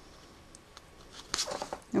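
Cardstock being handled: a short cluster of soft rustles and clicks from the paper card about a second in, after a quiet start.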